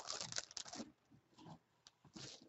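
Plastic bag around a football jersey crinkling under hands pressing it flat in a cardboard box. The crinkle fades out within the first second, leaving a few faint ticks.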